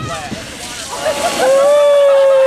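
A sled sliding through a slushy meltwater puddle with a splashing hiss. About one and a half seconds in, a person starts a long, high-pitched held scream.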